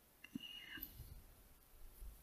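Near silence: faint room tone with soft mouth and breath noises from about a quarter of a second in.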